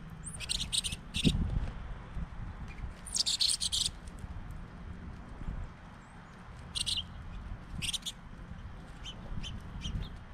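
Small songbirds chirping in repeated short bursts of high calls, the longest nearly a second, over a low rumble.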